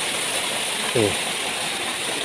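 Water from a borewell pump jetting out of an open outlet pipe onto the ground, a steady rushing hiss.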